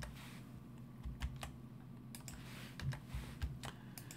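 Several faint, scattered clicks of computer keys over a low steady hum.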